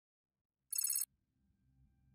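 A short, high, rapidly trilling ring lasting about a third of a second, just under a second in, in otherwise near silence.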